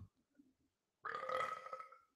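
A man burps once, a faint burp of just under a second that starts about a second in, with his head turned away from the microphone.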